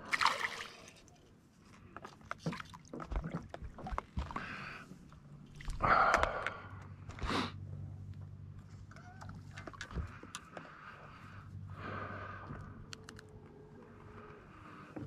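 A hooked bass splashing at the surface beside the boat as it is landed. Scattered clicks and knocks of handling follow, with water sloshing and two louder splashy bursts about six and seven seconds in.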